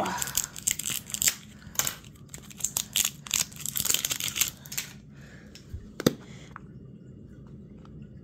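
Clear plastic wrapping crinkling and tearing, with dense irregular crackles for about five seconds, as a plastic toy capsule is unwrapped. One sharp click about six seconds in, then little sound.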